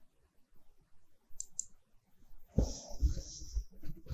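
Two quick computer mouse clicks about a second and a half in. About a second later comes a louder noisy burst lasting about a second.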